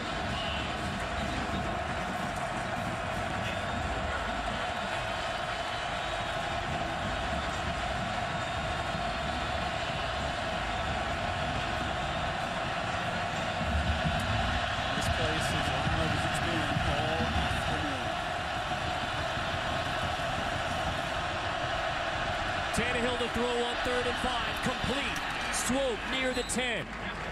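Stadium crowd noise: a large crowd keeping up a steady roar of voices against the visiting offense on third down. It swells a little about halfway through as the play runs, and single shouts stand out near the end.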